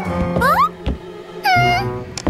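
Background music under two short, high-pitched, frightened whimpers from a cartoon character: a quick rising squeak about half a second in, then a held, slightly wavering whine near the end.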